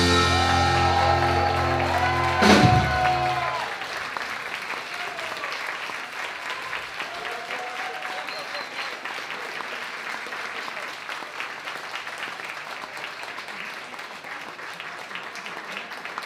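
Rock band ending a song on a held chord, with a last drum and cymbal hit about two and a half seconds in, then stopping. Audience applause follows and carries on to the end, quieter than the band.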